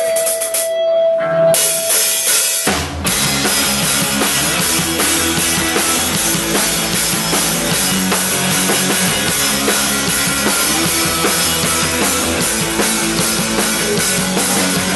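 Live rock band with drum kit, electric guitar and bass guitar starting an instrumental intro. It opens with a held note and a cymbal wash, and the full band comes in loud about three seconds in with a steady driving drum beat.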